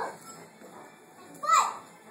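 A high-pitched voice giving two short squealing cries, each rising and falling in pitch. One comes right at the start and a louder one about one and a half seconds in.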